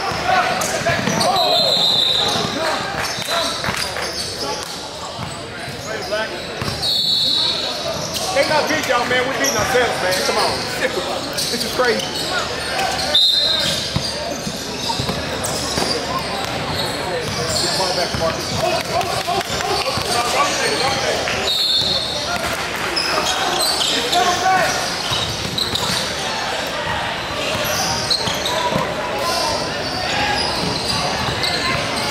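Live basketball game on a hardwood court in a large echoing gym: a ball being dribbled, sneakers squeaking briefly four times, and spectators and players talking throughout.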